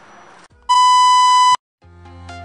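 A single loud, steady electronic bleep tone lasting under a second that cuts off abruptly. Music begins near the end.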